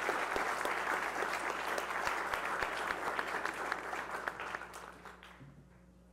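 Audience applauding after a talk, the clapping dying away about five seconds in.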